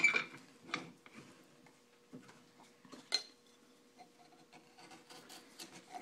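Wood-carving tools handled on a workbench: a few faint clicks and one sharper metallic clink about three seconds in, over a faint steady hum.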